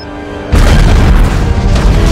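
Film explosion sound effect of a remotely detonated explosive arrow. It comes as a sudden loud blast about half a second in and rumbles on, under the film's music.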